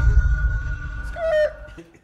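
The tail of a podcast intro sting: a low rumble and a thin held tone dying away, with a short wavering tone a little after a second in, fading almost to nothing by the end.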